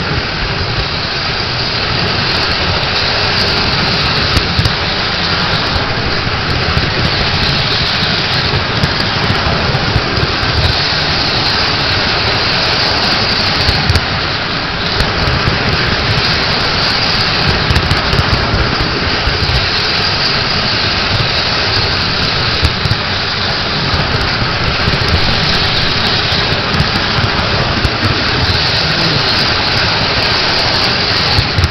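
Model train running on three-rail metal track, heard up close from a camera car riding in the consist: a loud, steady rolling noise of wheels on rail with a low rumble underneath.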